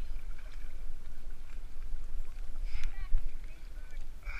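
Wind rumbling on the microphone over water lapping and splashing around a landed pink salmon being handled in the shallows. A brief, sharp splash or voice-like sound comes about three seconds in.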